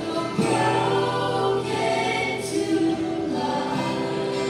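Live worship band playing a Christian song, several voices singing a held line together over acoustic guitar and band; it gets louder about half a second in.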